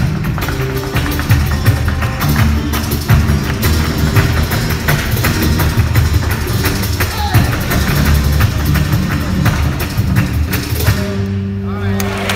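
Flamenco dancer's footwork: rapid, dense heel and toe strikes on the stage over flamenco guitar. About eleven seconds in the footwork stops and a final guitar chord rings on.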